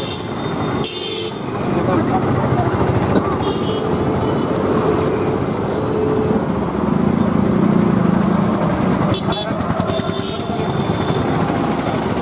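Street traffic: motorcycles and vehicles passing with short horn toots, over people talking in the background.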